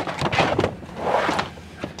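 A heavy rubberized cargo liner being pushed and dropped into the cargo area: two rough scraping, sliding sounds with a few knocks as it settles against the floor and sides.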